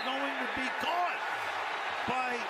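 A TV play-by-play announcer's voice over steady stadium crowd noise from a football broadcast.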